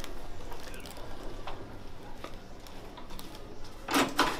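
Low room tone with faint rustles and small knocks as a patient is held in position on a chiropractic treatment table, then a sudden loud burst of sound right at the end.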